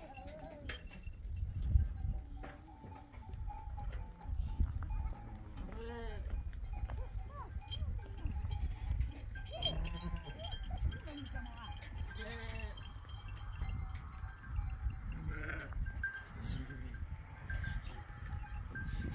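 Goats and sheep bleating, several short wavering calls a few seconds apart, over low rumbling gusts.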